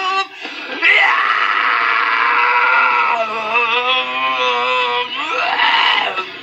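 A male metal vocalist screams. One long held scream rises in about a second in and lasts about four seconds, its pitch dipping partway through, and a short rising yell follows near the end.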